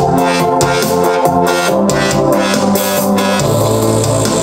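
Electronic dubstep track playing back from the Reason arrangement: a synth bass from the Thor synthesizer holds notes that step in pitch and drop lower near the end, under held keyboard chords and a steady ticking hi-hat pattern.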